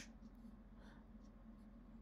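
Near silence: room tone in a pause between spoken sentences.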